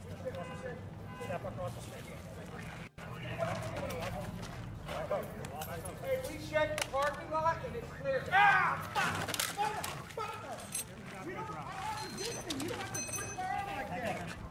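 Several people's raised, indistinct voices over a steady low background rumble, loudest about eight and a half seconds in, with a brief dropout about three seconds in.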